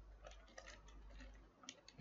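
Faint, separate keystrokes on a computer keyboard: several light clicks at irregular intervals as code is typed.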